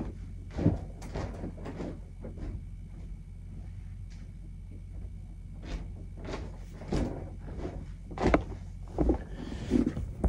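Irregular knocks, bumps and handling noises of a person moving about and fetching things off-camera, the louder bumps about seven and eight seconds in, over a low steady hum.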